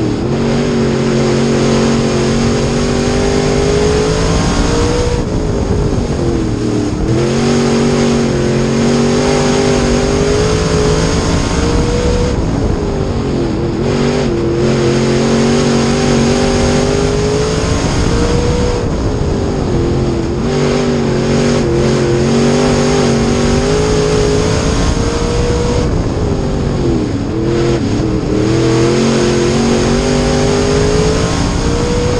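Street stock dirt-track race car's V8 engine heard from inside the cockpit, running hard lap after lap. The engine note drops as the driver lifts into each turn, about every six to seven seconds, then climbs again down the straight.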